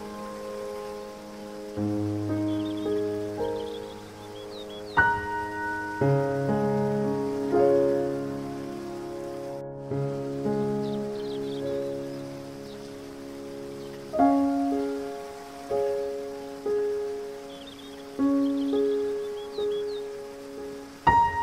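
Slow, gentle solo piano music, single notes and soft chords struck every second or two and left to ring, over a steady hiss of falling water. Faint high chirps come through twice.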